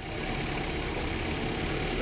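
Tour bus engine running low and steady as the bus creeps along in congested traffic, heard from inside the bus cabin.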